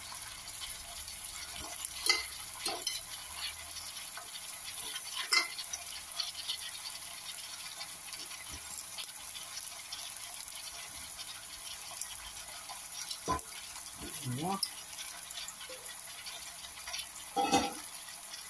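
Chopped vegetables frying in a stainless steel pot, a steady sizzling hiss, with a few light knocks as the pieces are stirred or dropped in.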